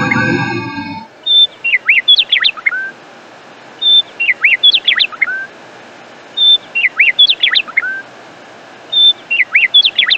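Birdsong on the end-screen track: one short phrase, a brief steady whistle followed by several quick sweeping chirps, repeated identically four times about every two and a half seconds, as from a looped recording. A held musical chord dies away about a second in.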